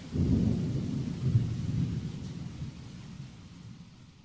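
Thunder in the recording: a low rolling rumble that begins suddenly, swells about a second and a half in, and slowly dies away.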